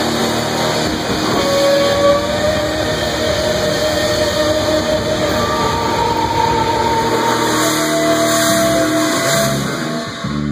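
Live rock band playing an instrumental loudly, a dense, distorted wall of electric guitars, bass and drums, with a lead guitar holding long sustained notes over it.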